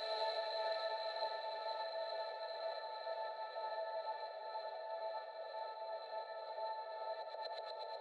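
The outro of a progressive house track: a sustained synthesizer pad chord with no beat, held and slowly fading. A faint, quick flutter comes in over it near the end.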